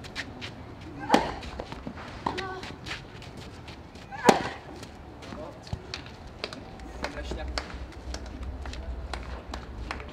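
A tennis ball is struck hard with racquets in a rally: two loud hits about three seconds apart, with fainter knocks and low voices around them.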